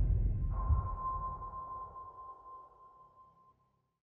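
Cinematic trailer sound design: a deep bass boom dies away, and about half a second in a single steady high tone starts and slowly fades out.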